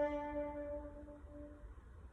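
French horn holding a soft note that dies away about one and a half seconds in, followed by a brief pause.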